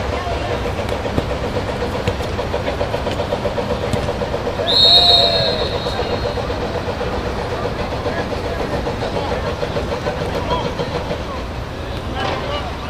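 A referee's whistle gives one short, shrill blast about five seconds in, over a steady background rumble and low drone.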